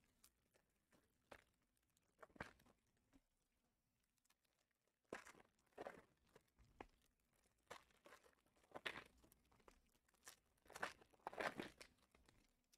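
Foil wrappers of Panini Prizm basketball card packs being torn open and crinkled by hand, in short, faint, scattered bursts that come more often in the second half.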